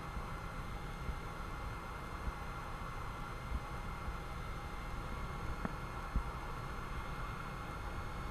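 Faint, steady cabin drone of a Cessna 172 gliding on final approach with the engine at idle, heard through the intercom recording, with a few thin steady electrical tones over a low rumble.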